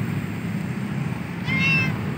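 Stray cat giving one short meow about a second and a half in.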